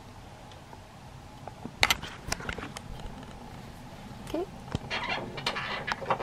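Sharp metallic clicks and knocks from a wood-burning range cooker's oven and its wire rack as pizzas are put in, a short squeak midway, then a run of lighter clatters near the end.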